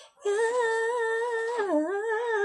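A man singing unaccompanied, holding one long high note with a slight waver; the pitch dips lower near the end.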